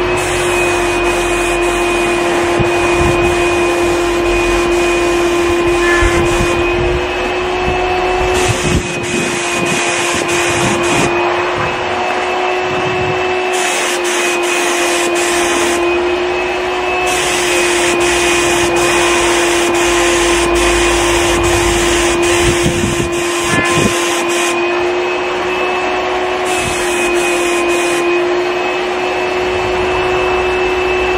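QT5 HVLP turbine sprayer running with a steady, even whine, while the gravity-feed spray gun lays on a coat of paint in passes, its hiss coming and going as the trigger is pulled and released.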